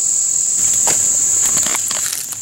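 Steady, high-pitched insect chorus, with a few faint clicks in the second half.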